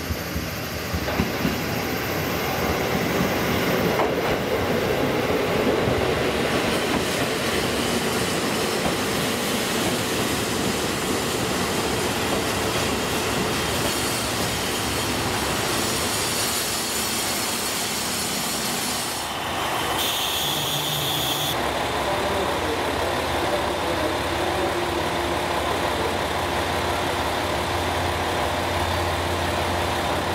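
JR Kyushu KiHa 185 series diesel railcars running slowly into a station, with wheels rumbling over the rails and track joints. In the latter part there is a steady low diesel engine hum as a train stands or creeps at the platform.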